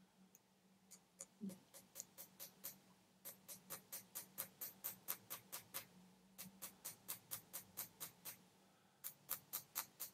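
Faint, light taps of a hammer on a small steel punch seated in a hole in copper sheet, about four taps a second in runs of a couple of seconds with brief pauses. The punch is turned between taps to undercut the hole, giving it steeper walls and a small mound at the bottom that will splay and lock the inlaid silver wire.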